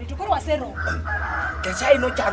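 A rooster crowing: one long, level call that starts a little before halfway and lasts about a second, with people talking before it.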